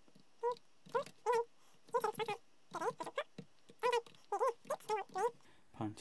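A quick series of about a dozen short, high-pitched whining calls with wavering pitch.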